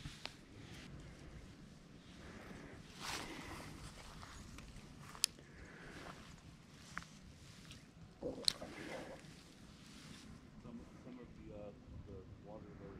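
Quiet bankside ambience with faint rustling and a few short, sharp clicks from a spinning rod and reel being handled.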